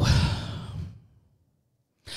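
A person sighing into a close microphone: one breathy exhale lasting about a second, with the breath thumping low on the mic.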